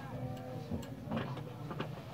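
Quiet small room with soft, indistinct murmured voices and a few faint ticks or clicks.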